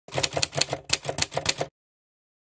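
A rapid run of typewriter-like key clicks, about a dozen strokes at roughly seven a second, that stops abruptly near the end.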